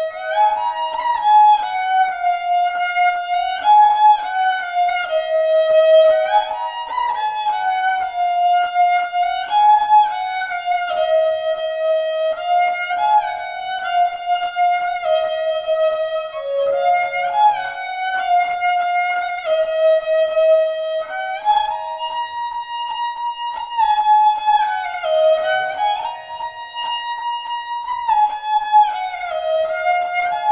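Sarinda, the bowed Pashtun folk fiddle, played solo: a single melody line with sliding notes that climbs and falls in repeated phrases.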